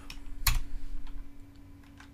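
Computer keyboard keystrokes as a value is typed into an input field: one sharp keystroke about half a second in, then a few lighter ones over the next second.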